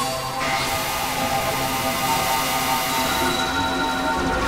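Experimental electronic noise music: a dense wash of hiss over several held synthesizer tones, with a sweep rising about half a second in.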